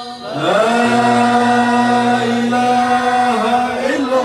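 Men chanting an Islamic devotional chant (dhikr) into microphones, in long held notes. A lower voice holds a steady note under the lead for a couple of seconds.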